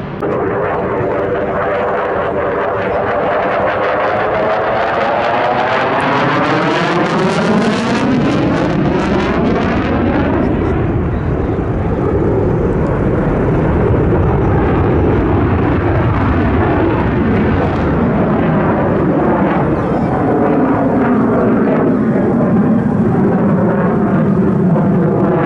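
Single-engine F-16 fighter jet flying a display pass, its engine making a loud continuous jet noise. For the first several seconds the noise has a sweeping, phasing quality as the jet passes, then it settles into a steadier rumble.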